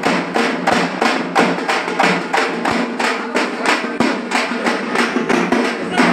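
Hand drums, a frame drum and a double-headed drum, beaten with sticks in a fast, steady rhythm of about five strokes a second.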